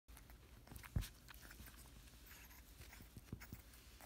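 A puppy softly mouthing and nibbling a person's finger: faint scattered clicks and rustles, with one dull thump about a second in.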